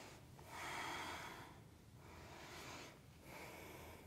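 A woman's slow, faint breathing while she holds a deep yoga squat: two long breaths of about a second each, the first just after the start and the second past the middle.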